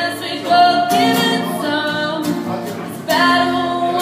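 Live acoustic pop song: a woman singing long held notes over strummed acoustic guitars, a louder new phrase entering about three seconds in.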